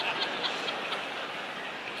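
Live audience laughing at a punchline: a crowd of laughter that swells up, peaks right away and slowly dies down.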